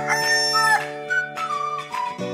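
A rooster's crow, its long last note falling away just under a second in, over intro music of sustained chords with a short flute-like melody.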